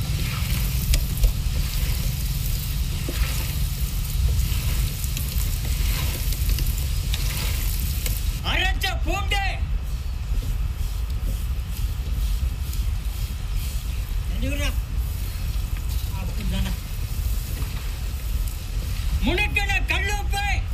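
Fish pieces frying in hot oil, a steady sizzle that fades about eight seconds in. Short voice-like sounds come in around then and again near the end.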